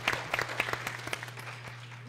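An audience applauding, the scattered claps thinning and dying away toward the end, over a steady low hum.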